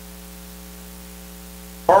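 Steady electrical mains hum with a stack of even overtones, unchanging throughout. A man's voice starts right at the end.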